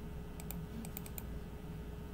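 A quick run of about seven light computer clicks, from the mouse and keyboard while working in a file browser, bunched together about half a second to a second in, over a faint steady low hum.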